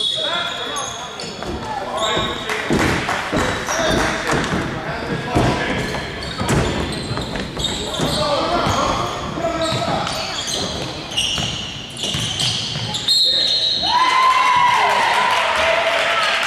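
Basketball bouncing on a gym's hardwood court during a game, with voices from players and spectators echoing in the large hall; a loud voice rises about two seconds before the end.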